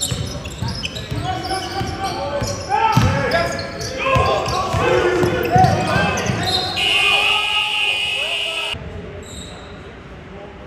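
Basketball being dribbled on a hardwood sports-hall court, with repeated bounces, sneakers squeaking and voices calling out across the hall. About seven seconds in a steady high tone sounds for about two seconds, then the busy court sound cuts off suddenly.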